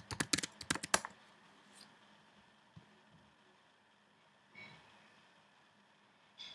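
A quick run of about ten keystrokes on a computer keyboard in the first second, typing a password.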